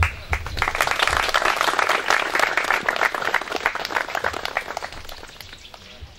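A crowd applauding: a short thump at the very start, then many hands clapping that quickly swell, hold, and thin out toward the end.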